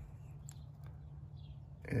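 Quiet background: a faint steady low rumble with a few faint clicks.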